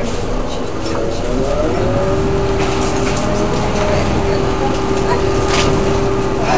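Park-and-ride bus engine and drivetrain heard from inside the cabin, its whine rising about a second in as the bus pulls away, then holding steady over a continuous rumble. A brief sharp click near the end.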